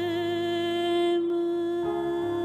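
A woman's voice holds one long note with vibrato, with soft piano accompaniment under it in a French chanson. Near the end the held note gives way as new piano chords come in.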